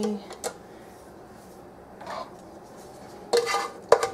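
Metal kitchenware clattering: a saucepan and utensil knocking against each other with a few light taps, then a louder scraping clatter and a sharp ringing clank near the end.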